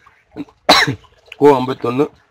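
A man coughs once, a short burst about two-thirds of a second in, then goes back to talking.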